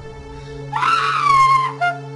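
A woman's anguished scream of grief, one long cry sliding slightly down in pitch, starting a little under a second in, over sustained background music.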